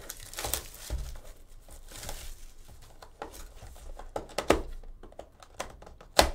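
Plastic wrap being torn and crinkled off a sealed box of trading cards, with irregular crackles and sharp clicks.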